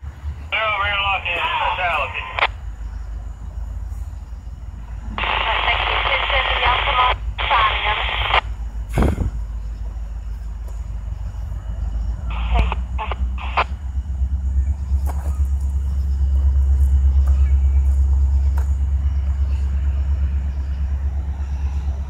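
Railroad radio voice transmissions over a scanner, thin and band-limited, in two bursts in the first half. Underneath runs a steady low rumble that grows louder in the second half.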